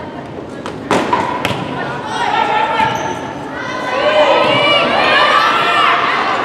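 Volleyball struck hard about a second in, with a second smack half a second later, the hits echoing in a gymnasium. Then players and spectators call and shout over the rally, growing louder toward the end.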